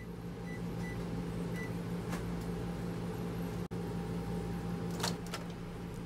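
Microwave oven keypad beeping three times, short high beeps, as the oven is set to cook on high for three minutes, over a steady low hum. A few clicks come about five seconds in.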